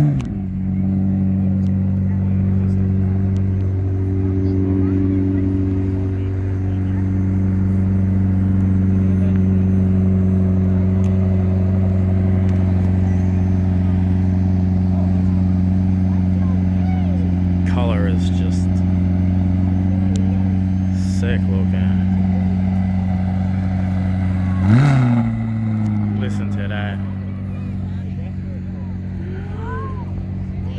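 A car engine idling steadily and loudly, with a quick rev blip right at the start and another about 25 seconds in, after which it settles back to idle a little quieter.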